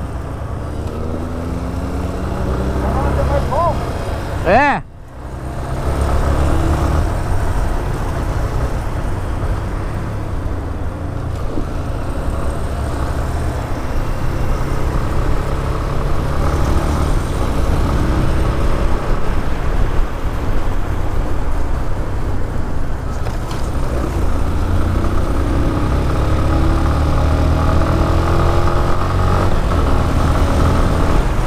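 Motorcycle engine, the Yamaha Fazer 250 single, running on the road with heavy wind noise on a helmet-mounted camera. The revs climb over the first few seconds. About five seconds in there is a brief rising whine and a momentary drop in sound, and after that the engine holds a steady cruise.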